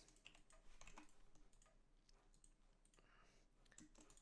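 Near silence with a few faint clicks of a computer mouse and keyboard, as shapes are shift-selected.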